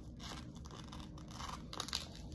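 Velcro strap on a cervical neck collar being pulled and pressed as it is adjusted: a short tearing rasp soon after the start and another near the end, with rubbing of the collar's plastic and foam.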